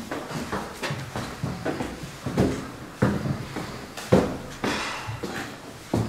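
Footsteps of several people climbing a staircase: an uneven run of thuds and scuffs, a few of them sharper and louder, the sharpest about four seconds in.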